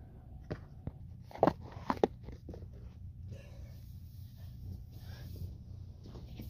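Handling noise from the recording phone being picked up and moved: a quick run of knocks and bumps, two of them much louder, then a few seconds of rustling.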